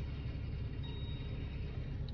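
Car idling while stopped, heard inside the cabin as a steady low rumble.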